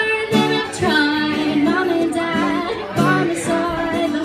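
A woman singing live while strumming an acoustic guitar, her voice carrying a held, wavering melody over the steady chords.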